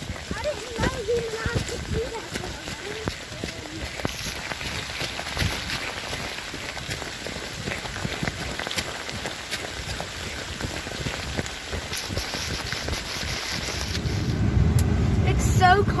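Irregular patter and handling noise as a phone camera is carried at speed over wet, boggy ground. Near the end a vehicle's engine hums low inside the cabin.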